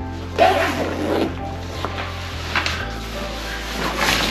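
Background music with the handling noise of a fabric camera backpack being worked on a wooden table: several short scuffs as its pockets are closed up, and the bag is lifted near the end.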